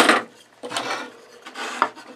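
Wooden pieces sliding and scraping across a wooden workbench top in two scrapes, a short one at the start and a longer one about a second later.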